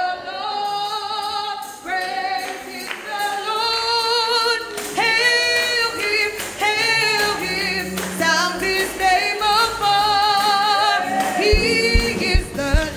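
A woman singing a slow gospel melody with long, wavering held notes, amplified in a church hall. A low bass note joins about two-thirds of the way through, and drum beats start near the end as the band comes in.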